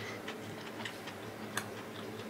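Faint eating sounds: soft ticking clicks of chewing a mouthful of curry fried rice, with one sharper click about a second and a half in.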